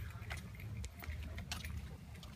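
Handheld walking noise on a concrete sidewalk: a steady low rumble from the phone being carried, with light scattered clicks and small jingles.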